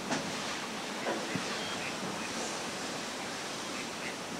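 Steady outdoor background hiss, with a few faint brief sounds: one right at the start, one about a second in, and tiny high chirps around the middle.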